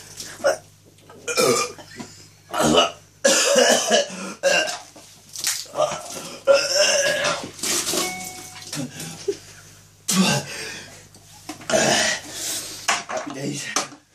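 A man belching and gagging over and over in short, loud, throaty bursts, the sound of his stomach rejecting a foul drink he has just downed.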